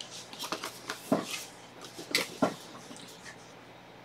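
A cardboard keyboard box being fetched and handled: a scattering of short knocks and rustles during the first two and a half seconds, then a quieter stretch.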